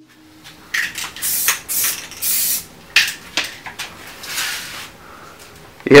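A run of short hissing and rustling noises with a few sharp clicks, irregular and unpitched.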